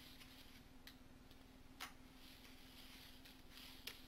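Near silence: a steady low hum with a few faint clicks, the sharpest a little before the middle.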